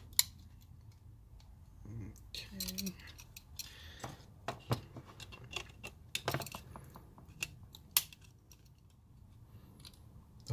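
Small clicks and rattles of hands fitting metal spade terminals and a plastic switch insert into a sheet-metal electrical box, with sharp clicks just after the start and about eight seconds in. A brief hum of voice about two and a half seconds in.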